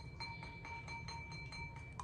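Wooden stirring stick clinking lightly and rapidly against a ceramic bowl of crystal-growing solution, about six small clicks a second, with a steady high ringing tone underneath.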